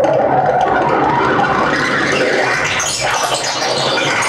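Live electronic music from a laptop ensemble, played over loudspeakers: a dense, grainy noise texture with no steady beat.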